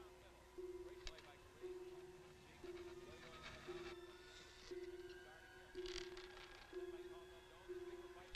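A low steady tone pulsing about once a second, each pulse lasting about half a second, with faint scattered higher sounds around it.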